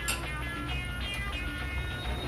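Lentil vadas deep-frying in hot oil, a steady sizzle, under faint background music.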